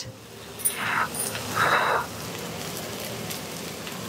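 Smashed baby potatoes frying in a pan, a low steady sizzle, with two short puffs of breath about one and two seconds in.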